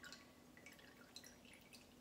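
Faint drips and a thin trickle of strained juice falling from the Thermomix bowl into a cocktail glass, with a few small ticks of drops landing.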